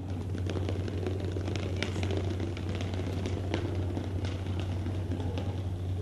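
Books toppling one after another in a long domino chain: a rapid, continuous clatter of small knocks, over a steady low hum.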